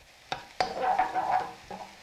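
Wooden spoon stirring diced red onion in a nonstick wok: a couple of knocks of the spoon on the pan about half a second in, then scraping, over a faint sizzle of the onions frying in oil.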